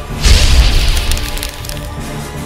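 A loud crash sound effect hits about a quarter second in: a deep boom with a cracking, splintering noise on top, dying away over about a second. Theme music plays under it.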